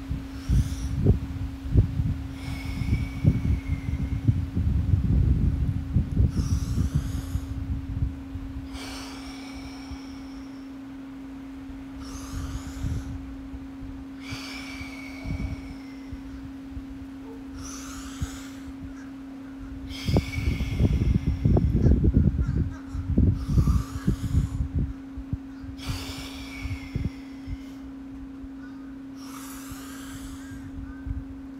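A man taking slow, deep breaths through the mouth, a rushing inhale or exhale every few seconds for about five full breaths, as the warm-up before a breath hold. A steady low hum runs under it, with bursts of low rumble in the first few seconds and again about two-thirds of the way through.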